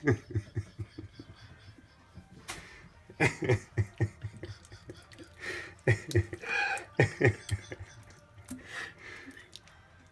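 Wet squelching of raw fish innards as they are pulled and torn out of the body cavity by hand, in a string of short, irregular sounds.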